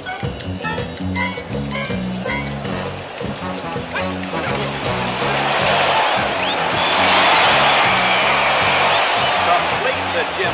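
Film score music with a rhythmic bass line. From about four seconds in, a stadium crowd's cheer swells and becomes the loudest sound, as the play ends in a touchdown.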